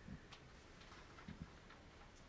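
Near silence: room tone with a few faint, soft low thumps.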